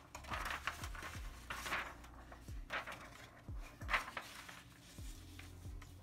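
Sheets of paper rustling and sliding as they are handled and a blank sheet is laid flat on a cardboard board, in several short bursts over a faint low hum.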